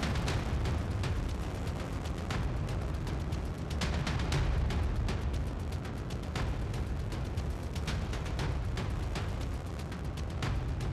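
Chollima-1 carrier rocket's engines during launch: a continuous deep rumble with irregular crackling pops throughout.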